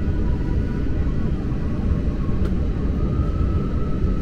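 Jet airliner cabin noise while taxiing: a steady low engine rumble with a faint thin whine above it that steps up slightly in pitch about three seconds in.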